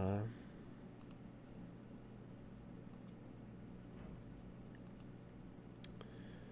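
Faint computer mouse clicks: four quick pairs spread across a few seconds, over a low steady hum.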